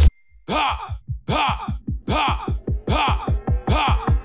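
Dubstep track cutting out abruptly, then a zombie-like groaning vocal sample repeated in rhythm, each groan bending up and sliding down in pitch. Under it run fast, steady low drum pulses, and the section grows louder toward the drop.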